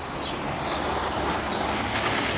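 Utility knife blade slicing a long slit through the old polythene cover of a polytunnel, a steady noise throughout.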